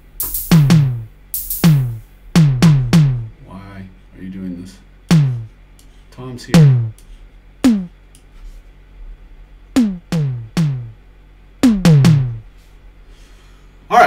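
Electronic drum samples auditioned one at a time in a Battery software drum sampler: about fifteen deep hits at uneven intervals, some in quick runs of two or three. Each hit is a sharp click that drops quickly in pitch into a short, low boom.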